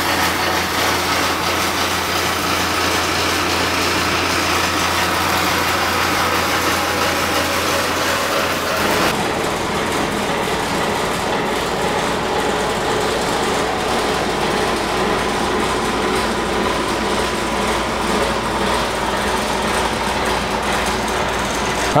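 Steady machine running noise with a low hum. The hum changes abruptly about nine seconds in.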